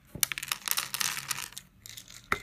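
Small dry pieces of dehydrated butternut squash clattering onto a plate, a quick run of light clicks and rattles that thins out after about a second and a half.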